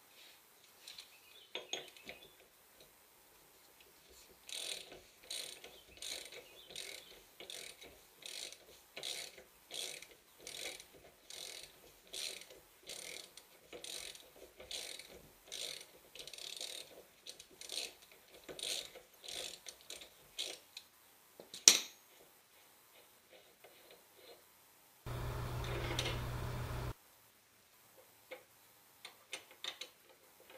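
Hand ratchet clicking in a steady run of short strokes, about two a second, as the rear axle spindle nut is run off the hub of a Corvette C6. It ends with a single sharp metallic click.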